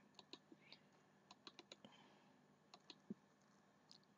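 Faint, scattered clicks of a computer mouse and keys, about a dozen over a few seconds, as text is pasted into a web form.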